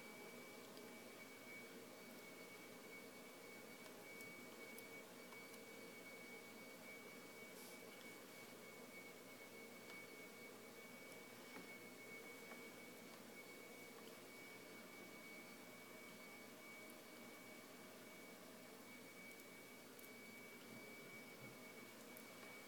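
Near silence: faint room hiss with a thin, steady high-pitched whine.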